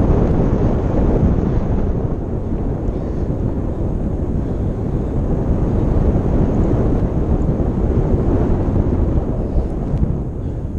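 Steady, loud wind noise on an action camera's microphone from the airflow of a tandem paraglider in flight, a low rushing with no clear tone.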